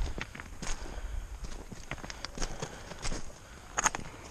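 Footsteps on a loose creek gravel bar: an irregular run of crunches and clicks, with one sharper clack near the end.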